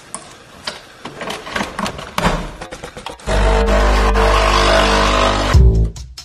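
Capsule espresso machine being loaded, with light clicks and knocks from the capsule and lever. About halfway through its pump starts a loud, steady buzz as the coffee is brewed, then cuts off shortly before the end with a falling pitch.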